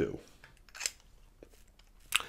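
A few faint, short clicks and taps of fountain pens being handled on a desk.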